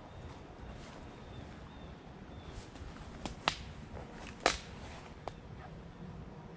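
Dry twigs snapping in the woods: a few sharp cracks in the second half, two close together about three and a half seconds in and the loudest about a second later.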